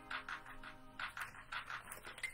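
Instrumental telephone hold music: a melody of short, quick notes repeating at a steady beat.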